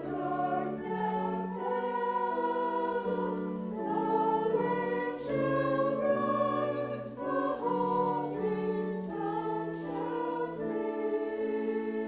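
Church choir singing a cantata piece in parts, moving between long held notes.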